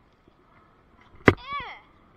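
A single sharp thump, the loudest sound here, about a second in, followed at once by a short vocal exclamation from a person.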